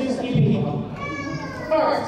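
A person's voice in a large hall, then a single high-pitched, drawn-out vocal call lasting under a second, held at a steady pitch a little past the middle.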